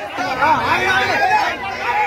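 A crowd of men shouting and chattering over one another, many voices overlapping at once.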